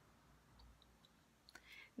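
Near silence with a few faint small clicks, then a short breath just before speech resumes.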